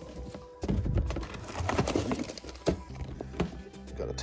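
Background music, with a clear plastic bag crinkling and rustling as the decal sheet inside it is handled: a run of irregular crackles and taps.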